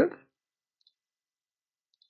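Two faint computer mouse clicks, about a second apart, in near silence.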